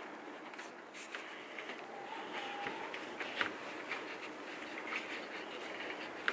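Pen scratching across notebook paper in a small room, with scattered light ticks and taps over a steady background hiss.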